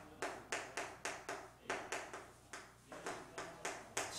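Chalk tapping and scraping on a chalkboard as words are written: a quick, irregular run of sharp clicks, several a second.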